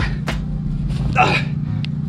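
A man's voice calling out short 'ta' cues, twice, over a steady low hum.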